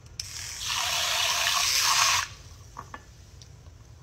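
A stream of liquid squeezed from a small red plastic bottle into a glass of water. It runs for about two seconds and stops suddenly, followed by a few light clicks.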